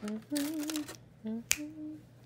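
A voice in a sing-song two-note hum, low then higher and held, done twice, over food. A single sharp snap comes about a second and a half in.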